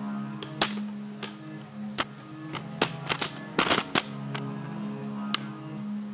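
Background hip-hop beat with no vocals, overlaid by sharp, irregularly spaced plastic clicks and knocks from handling a ThinkPad laptop's underside with a screwdriver, with a quick cluster of them about three and a half seconds in.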